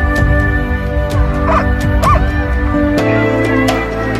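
Background music, with sled dogs barking and yipping over it; two short high yelps come near the middle.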